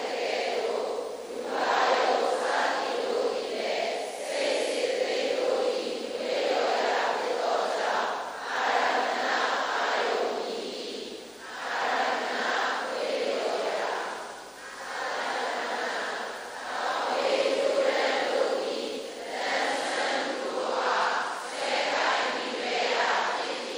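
A group of voices chanting a recitation together, in short phrases of a second or two with brief breaks between them.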